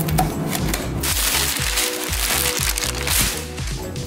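Cardboard shipping box being torn open by hand: packing tape and cardboard ripping, with the longest, loudest rip running from about a second in until near the end.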